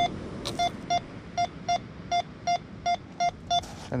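Minelab Go-Find 66 metal detector beeping over a buried target: about ten short, identical mid-pitched beeps at an uneven two to three a second, the first a little longer. The signal marks a coin in the shingle.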